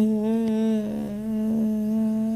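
A woman's voice holding one long hummed note at a steady pitch, with a couple of slight wavers in the middle, as if thinking aloud.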